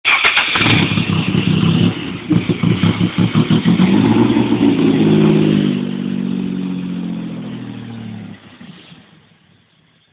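AC Cobra replica's 2.9-litre fuel-injected V6 running loud through side-exit exhausts, revved in quick blips, then pulling away with its note falling and fading out near the end.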